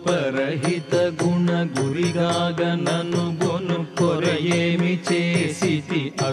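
Indian devotional song in Carnatic style: a melodic line with wavering vibrato over a steady drone, with evenly spaced percussion beats.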